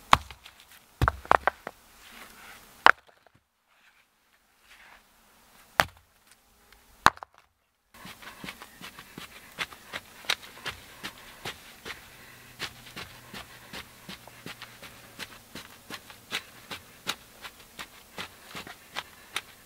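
Rocks tossed onto bare earth, landing with sharp knocks, about five in the first seven seconds. Then a wooden stick digging and scratching into soil, a steady run of small scrapes and ticks.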